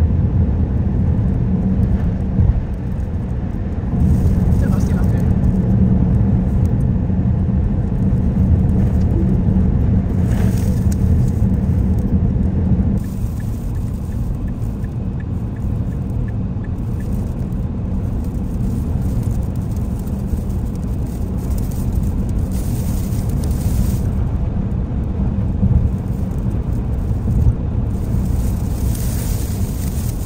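Road and wind noise inside a Tesla Model X driving on a highway through a sandstorm: a steady low rumble with hiss that swells and fades. A short run of faint, evenly spaced ticks comes about halfway through.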